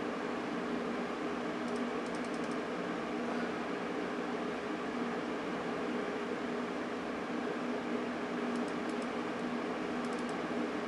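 Steady hum of a running Amiga 3000 computer, its power-supply fan and drives spinning, with a few faint light ticks about two seconds in and again near the end.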